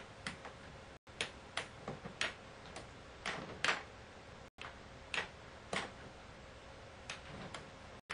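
Air hockey puck and mallets clacking: an irregular run of sharp clicks as the puck is struck and rebounds around the table, over a faint steady hum.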